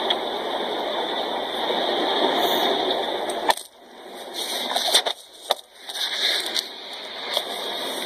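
Phone microphone rubbed and knocked while it is handled: a steady rushing noise with a few sharp clicks, cutting out briefly twice around the middle.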